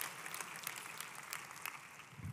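Faint scattered applause from a congregation, many small claps fading slowly away.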